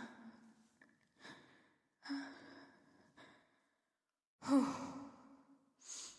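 A voice giving several short, breathy sighs, about four of them spaced a second and a half to two seconds apart, faint.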